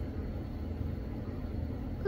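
Low steady rumble with a faint hiss of background noise.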